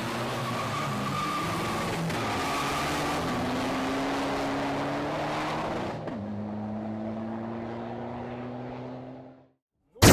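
Car engine accelerating hard down a track, its note climbing steadily. About six seconds in the pitch drops at a gear change and climbs again before the sound fades out near the end.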